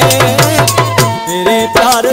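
Live Sindhi folk music: a hand drum beats a quick rhythm, about four strokes a second, under held harmonium tones and a wavering melody.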